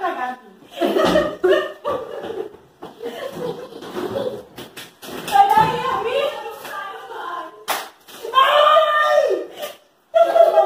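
Women's and a child's voices with laughter, and one sharp smack about three-quarters of the way through.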